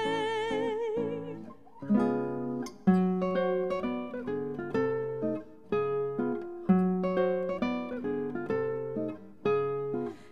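A soprano holds a sung note with vibrato that ends about a second and a half in. Then a solo acoustic guitar plays an instrumental passage, plucked melody notes and chords over bass notes.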